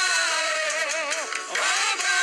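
Worship singing by a church congregation: voices holding long notes that waver in pitch, with a brief dip in loudness near the end.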